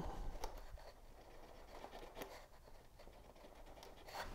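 Faint paper-handling sounds: a few light ticks and rubs as a glue bottle's nozzle works glue onto a cardstock tab.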